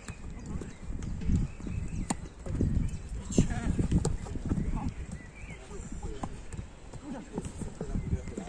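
Amateur football play on artificial turf: players' running footsteps patter and thud, with sharp ball kicks about two seconds and three and a half seconds in. Players shout in the background.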